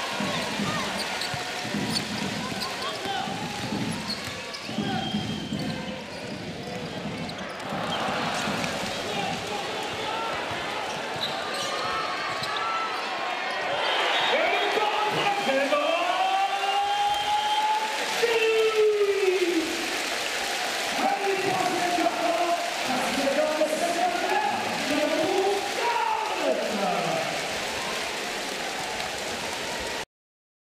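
A basketball being dribbled on a hardwood court, bouncing about once a second at first. Later come sharp sweeping squeaks of sneakers on the floor and players' voices, over the arena crowd, which grows louder in the second half.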